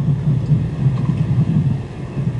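Low, uneven rumbling background noise, with no voice over it.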